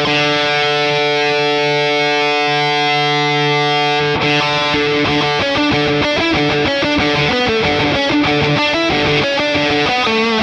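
Distorted electric guitar lead through a Boss Katana 100 MkII amp modeler, with light delay and the low end cut by graphic EQ. A single note or chord is held for about four seconds, then a fast run of picked notes follows.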